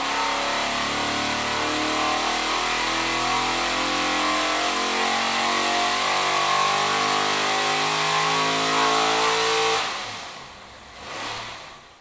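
433-cubic-inch big-block Chevy V8 running hard on an engine dynamometer, steady and loud for about ten seconds, then suddenly cut off. A brief smaller swell of engine sound follows about a second later and fades out.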